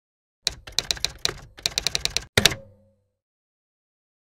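Typewriter sound effect: a quick run of key clacks, then a last heavier strike that rings briefly as it fades.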